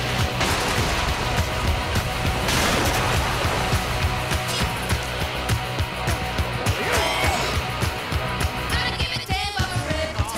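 Rock song with a steady driving beat, loud and continuous, as the soundtrack to a film fight scene.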